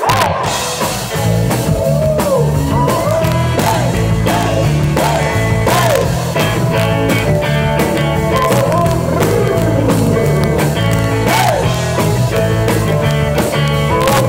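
Live rock band playing loudly: drums, bass and electric guitar, with a wavering melodic line above. The full band comes in right at the start and plays on steadily.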